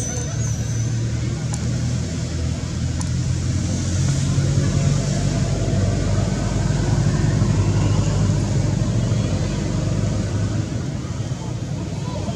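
A motor vehicle's engine running steadily with a low hum, growing louder through the middle and easing off near the end.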